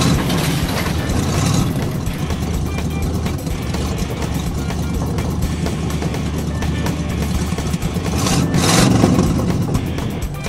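Background music over a cartoon monster truck's engine sound effect, running steadily. A short, louder rushing burst comes near the end.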